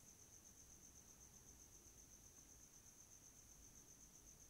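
Near silence, with only a faint, steady, high-pitched tone running through it.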